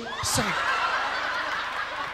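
An audience laughing at a punchline: many voices laughing together, swelling about a third of a second in and holding steady.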